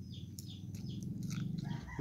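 A rooster crowing in the background, its drawn-out call starting near the end, over a low steady hum.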